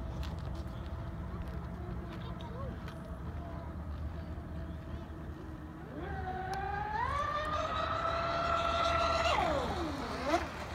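Twin Leopard 4082 2000kv brushless motors of an RC racing catamaran whining at speed. The whine is steady at first, rises in two steps to a high pitch about six and seven seconds in, holds, then drops steeply near the end as the boat runs past.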